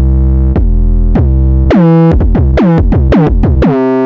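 Synthesized 808 bass played on a MIDI keyboard: a run of low, sustained bass notes, each starting with a quick downward pitch drop. The first notes are long, and from about halfway the notes come quicker and shorter, with a couple of higher notes among them.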